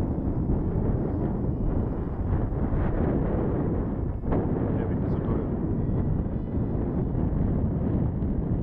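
Wind buffeting the microphone: a loud, unbroken low rumble of noise that dips briefly about four seconds in.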